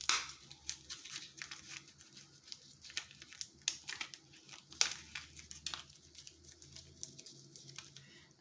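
Clear plastic blister packaging of a pack of mini highlighters crinkling and crackling as it is torn and picked open by hand, in irregular crackles with a sharper snap right at the start and a couple more around the middle.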